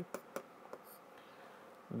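A few faint taps and a light scratch of a stylus writing on an interactive whiteboard, followed by near silence.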